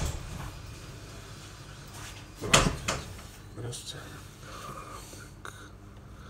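Handling noise from a smartphone held and worked in the hand: one sharp knock about two and a half seconds in, then a few softer clicks.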